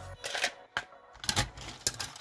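Cooked mussel shells clicking against a wire skimmer and a steel pot as they are scooped out of the broth: a few short sharp clatters about half a second apart.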